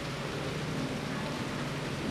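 Steady background hiss with a faint low hum, and no other event.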